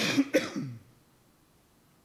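A man coughing twice in quick succession to clear his throat, the two coughs about a third of a second apart near the start, then quiet room tone.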